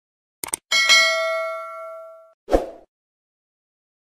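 Subscribe-button sound effect: a quick double mouse click, then a bright notification-bell ding that rings out for about a second and a half, followed by a short thump about two and a half seconds in.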